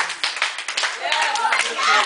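A group of people clapping by hand, with voices calling out over the claps from about a second in.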